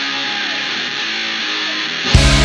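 Hard rock song in a thinned-out, band-limited guitar passage, with strummed electric guitar and no bass or drums.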